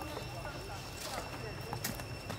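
Faint short animal chirps sliding up and down in pitch, over a steady high-pitched tone, with a couple of sharp clicks.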